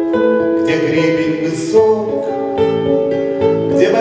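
A man singing a bard song to his own acoustic guitar, holding long, steady notes over plucked guitar chords.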